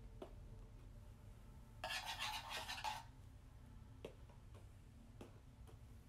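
Wire whisk wet with paint scratching across paper for about a second, starting about two seconds in, with a few faint taps as it is dabbed down.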